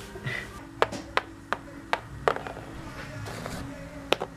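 Quiet background music with a run of five sharp taps, about 0.4 s apart, from a game token being hopped across a board-game board.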